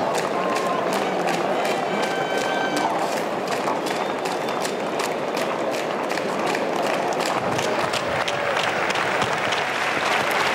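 Stadium crowd clapping, with many separate sharp claps standing out over a steady crowd noise.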